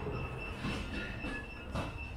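Quiet shop room tone: a low rumble with a steady high-pitched whine running through it, and faint background music.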